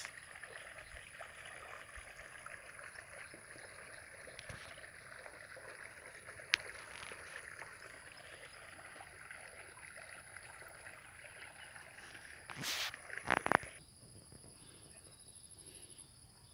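Faint field ambience with a steady, high-pitched insect chirring, typical of crickets. A few brief, louder noisy bursts come near the end.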